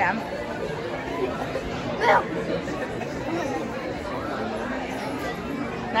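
Background chatter of many people talking in an indoor hall, a steady murmur of overlapping voices, with one short, louder voice rising in pitch about two seconds in.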